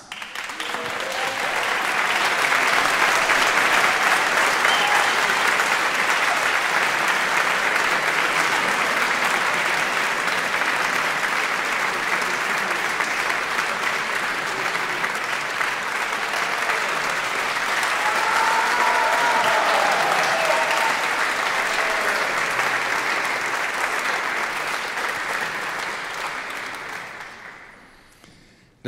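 Audience applause, swelling over the first couple of seconds, holding steady, then dying away near the end.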